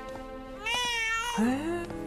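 Newborn baby crying: a high, wavering wail that starts about half a second in, which the adult takes for a hunger cry.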